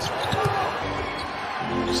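A basketball is dribbled on a hardwood court over a steady background of arena noise. Held musical tones come in near the end.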